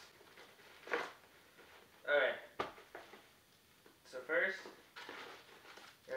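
A Priority Mail mailer being ripped open by hand: a short tearing sound about a second in, then quiet paper rustling and a single sharp click.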